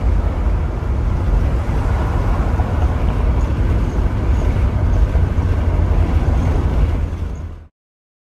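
Steady low rumble of engine, exhaust and road noise inside the cabin of a moving 1979 Chevrolet Impala fitted with a new exhaust. It cuts off suddenly near the end.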